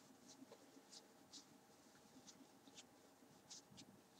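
Near silence with a series of faint, short rustles of a necktie's fabric rubbing as it is handled and pulled at the knot.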